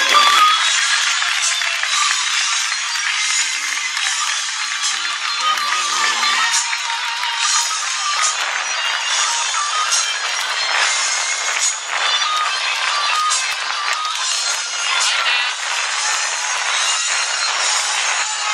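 A children's choir song with backing track ends at the start, followed by audience applause.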